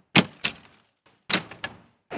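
Paddle latches of an ambulance body's exterior compartment doors clicking open, with the doors being pulled open: two pairs of sharp clicks about a second apart.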